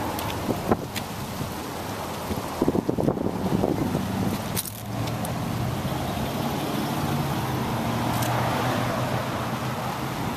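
2003 Toyota Camry idling, heard at the back of the car as a steady low hum that grows stronger about halfway through. A few clicks and rattles come in the first three seconds.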